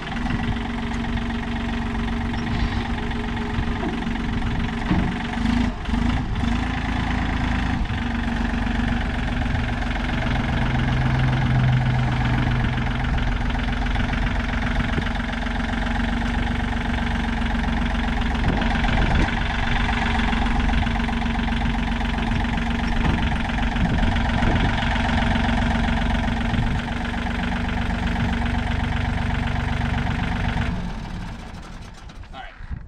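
John Deere compact utility tractor's diesel engine running steadily at low revs while it drives and works its front loader, carrying a dumpster. A deeper hum joins in for a few seconds about ten seconds in.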